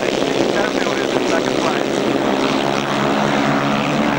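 A pack of solo grasstrack racing motorcycles, with single-cylinder engines, running flat out together in a steady droning chorus whose pitch shifts slightly as the riders slide through the bends.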